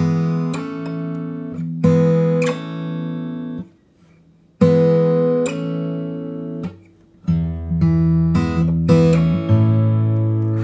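Fingerpicked steel-string acoustic guitar (Mayson MS7/S, standard tuning) playing chords that ring out. It demonstrates a chord change in which the index finger slides up to the 2nd fret while the ring finger hammers on from the open B string to the 2nd fret. The phrase is played more than once, with a brief silence about four seconds in.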